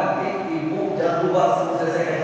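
A man's voice in a chanted, sing-song recitation, with drawn-out notes held at a steady pitch.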